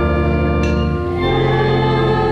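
Church organ playing a slow hymn with voices singing along in held chords. The chords change about a third of the way in and again near the middle.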